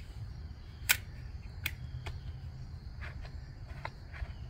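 A handful of short, sharp plastic clicks and knocks as a battery mini chainsaw is handled and turned over, the loudest about a second in. Underneath, a faint steady insect chirr and a low outdoor rumble.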